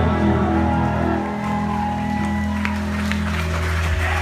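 Electric guitars and bass held through the amplifiers as sustained, ringing tones between songs of a live rock set, with some crowd clapping and cheering over them.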